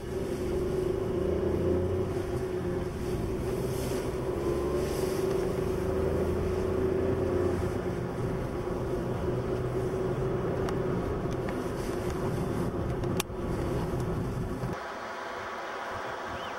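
Car engine and road noise heard from inside the cabin while driving, a steady engine hum with low rumble. Near the end it cuts off abruptly to quieter wind noise.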